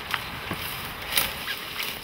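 Rustling from footsteps pushing through grass and scrub, with a few soft knocks scattered through it.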